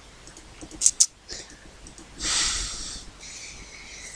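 Two quick mouse clicks, then a person's noisy breath out close to the microphone, a short snort-like exhale lasting about a second.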